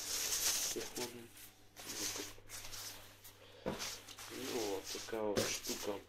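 Single-layer cycling windbreaker fabric rustling as it is handled, in a few short spells, with a sharp click about two thirds of the way in. A man's voice talks briefly near the end.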